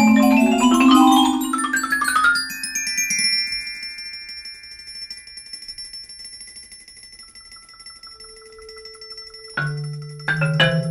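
Mallet percussion quartet with marimba playing a fugue: quick runs of struck notes climbing in pitch for about the first two seconds, then high notes left ringing and fading, with a new low chord struck just before the end.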